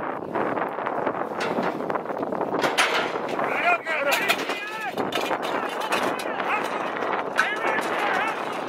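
Wind buffeting the microphone, with scattered sharp knocks, then from about three and a half seconds in a run of short excited yells from onlookers as a bull bucks out of a rodeo chute.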